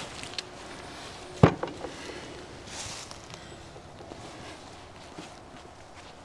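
A single sharp knock about one and a half seconds in, over faint rustling: the cut roe deer haunch being set down on a wooden table.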